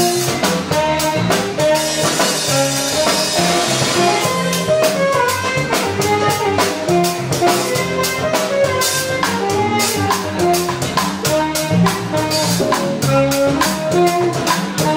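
A live jazz band with a Latin feel playing: a drum kit keeps a busy, steady beat on drums and cymbals under a bass line and a melody line.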